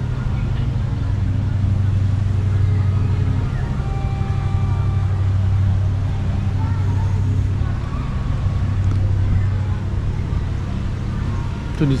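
A steady, low engine hum, with faint voices in the background.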